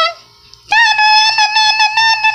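A high-pitched voice holds one long, steady note, starting just under a second in.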